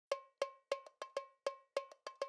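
A single pitched percussion instrument struck alone in a steady rhythm as the opening of a music intro: short, ringing hits of one note, about three a second, with a few lighter extra hits in between.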